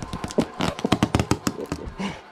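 Cardboard boxes and loose items being handled and shifted: a quick, irregular run of taps, knocks and scrapes.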